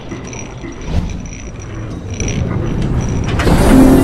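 Cinematic logo-intro sound effects: a low rumble with scattered crackles, swelling into a loud whoosh near the end.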